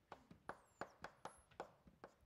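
Chalk writing on a blackboard: a quick run of faint, sharp taps, about six a second.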